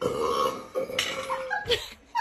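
A person's long burp, starting suddenly and lasting about a second and a half.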